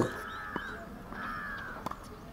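A bird calling twice, each a drawn-out, arched call of about half a second, with a short sharp knock near the end.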